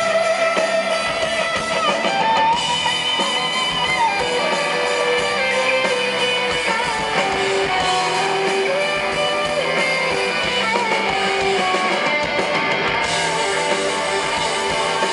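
Live rock band playing an instrumental passage: a Les Paul-style electric guitar plays held, bending lead notes over drums.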